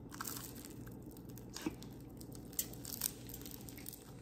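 Toast spread with a layer of melted crayon wax being bitten and chewed: irregular crisp cracks and crunches, with a few louder ones in the second half.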